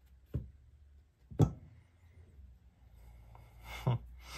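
Handling noises from a partly disassembled folding knife and its G10 handle scale: a light click, then a sharper knock about a second and a half in, and a rising rustle ending in another knock as the knife is set down on the work mat.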